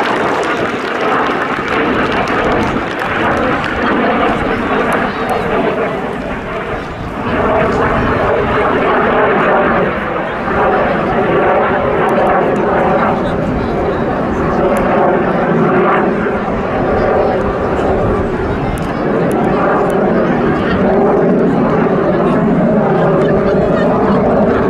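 BAC Jet Provost T.3A's single axial-flow Viper turbojet running loud and steady as the jet flies its display, dipping briefly about a quarter of the way in and then growing louder.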